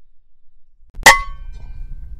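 A .22 AGT Vulcan 3 PCP air rifle fires once about a second in: a single sharp crack with a brief metallic ring, followed by a low rumble.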